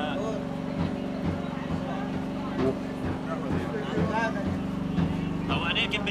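A steady low motor hum, like an engine running without change, under faint background chatter of voices.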